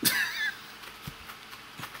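A man's brief high-pitched laugh in the first half-second, then quiet room tone with a few faint clicks.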